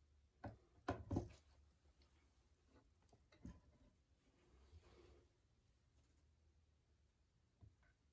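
Near silence with a few faint knocks and taps from a stretched canvas being handled and tipped on its supports: a cluster in the first second and a half, one more a few seconds later and another near the end.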